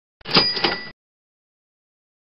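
A short slide-transition sound effect, under a second long, marking the change to the next exam question: a sharp click followed by a ringing sound with two steady high tones, then it cuts off.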